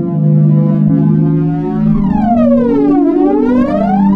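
Ambient electronic music: held low synthesizer notes under gliding sine-like tones, with a falling pitch sweep about halfway through that meets a rising sweep near the end.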